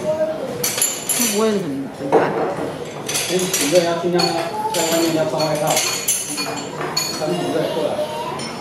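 A metal spoon and chopsticks clinking against a porcelain soup bowl as someone eats, with voices talking alongside.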